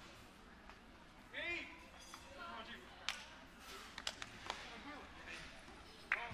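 Faint, scattered voices in a large hall, one briefly louder about a second and a half in, with a few short sharp knocks a little after the middle.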